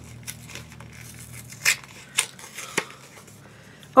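Perfume sample packaging being torn open and handled: scattered crackles and snaps, with two louder ones around the middle.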